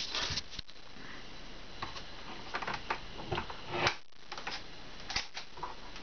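Irregular light clicks, taps and rustles of handling at a Samsung front-loading washing machine's door and drum, with one louder knock about four seconds in.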